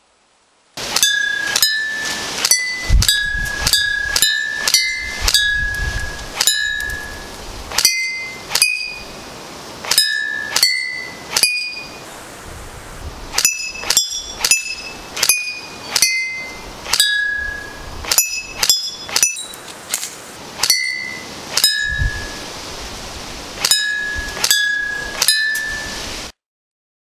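Airsoft BBs striking a row of empty glass bottles one at a time, each hit a sharp tick followed by a short ringing note. The bottles ring at a few different pitches, so the hits sound like a simple tune. The hits begin about a second in and come irregularly, one or two a second.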